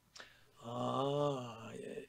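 A man's voice drawing out one long, low vowel on a steady pitch for about a second and a half, after a short mouth click.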